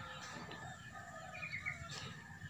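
Faint outdoor birdcalls, with a few short chirps in the second half, over a steady faint high hum.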